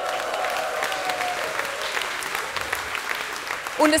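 Audience applauding, many hands clapping, with a long drawn-out cheer over the clapping in the first second or so; the clapping dies away near the end.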